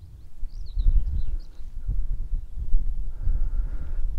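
Faint birdsong, thin high chirps in the first couple of seconds, over a loud low buffeting rumble on the microphone that sets in about half a second in.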